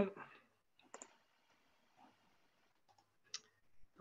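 Near silence broken by two short, sharp clicks, about a second in and again near the end.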